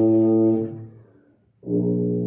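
Bass tuba holding a long low note that fades away about a second in, then after a brief silence a new sustained low note begins near the end.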